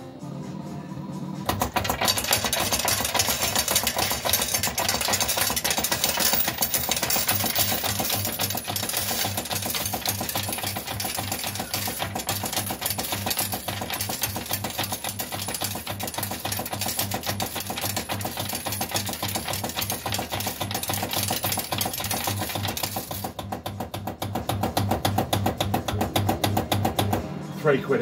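Cloud 999 fruit machine's hopper paying out its bank: a long, fast rattle of tokens clattering into the payout tray, starting about a second and a half in and stopping near the end.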